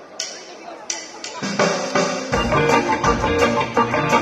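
Live ska band starting up: a few sharp drum hits, then the full band comes in about a second and a half in, with the bass joining shortly after.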